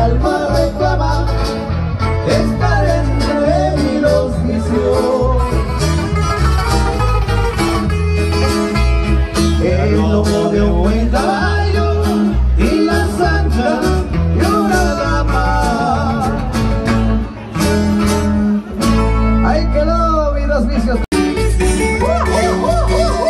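Live band playing dance music on guitars over a strong, steady bass, with a melody that bends up and down throughout. The sound cuts out for an instant near the end.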